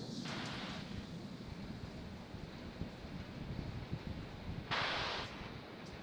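Wind rumbling on an outdoor launch-pad microphone, a steady low noise, with a brief burst of hiss lasting about half a second near the end.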